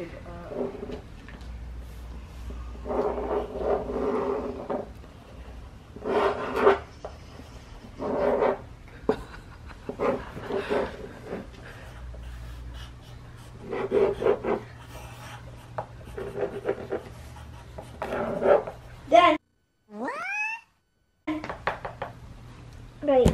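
Short wordless vocal sounds, one every second or two. Near the end the sound drops out briefly, and a rising glide follows.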